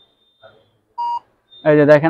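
One short electronic beep from a smartphone barcode-scanning app about a second in: the app reading a product's barcode to check that the product is genuine.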